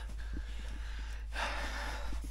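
A towel rubbing over a man's face and chest as he dries off, with his breathing; the rubbing swells louder for the last half second or so. A low steady hum runs underneath.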